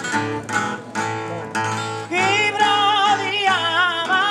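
Unamplified acoustic guitar strumming chords of a Sardinian canto a chitarra "secondo in re", about twice a second. About halfway through, a man's high, ornamented singing voice with a wide quavering trill comes in over the guitar.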